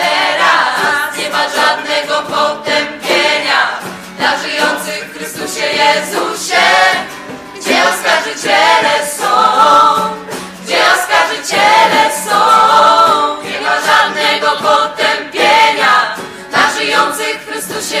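A choir singing a Polish religious song.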